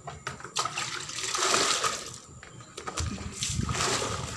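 Water poured from a plastic basin into a plastic bucket of detergent, splashing and churning up suds. The pouring comes in two spells with a short break a little past halfway.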